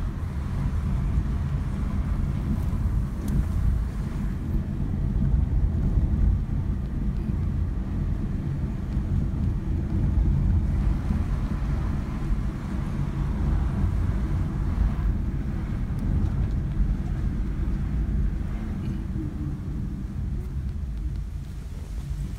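Car driving along, heard from inside the cabin: a steady low rumble of engine and tyres on the road that rises and falls slightly.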